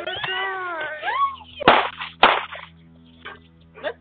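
Two gunshots from a drive-by shooting: sharp, loud bangs about half a second apart. Just before them comes a high, wavering cry.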